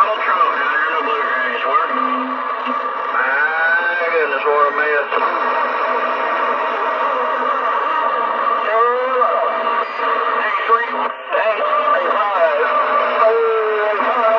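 Voices received over a Galaxy DX 959 CB radio's speaker on channel 28 (27.285 MHz). They sound thin and bass-less over a steady hiss of band noise, with a brief dropout about eleven seconds in.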